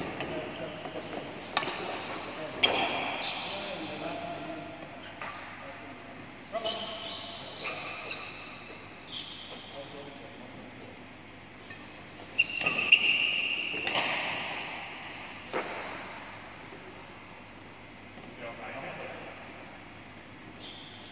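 Badminton rally in an echoing sports hall: sharp racket strikes on the shuttlecock at irregular intervals, the loudest about 13 seconds in, with high squeaks from court shoes on the floor.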